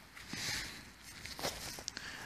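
Faint rustling and a few small clicks of a gloved hand handling a mud-caked iron horseshoe and loose soil at a freshly dug hole.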